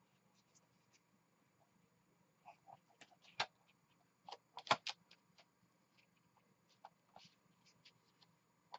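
Paper being slid and lined up on a plastic paper trimmer, with faint rustling and a few sharp clicks of its parts, the loudest about three and a half and nearly five seconds in.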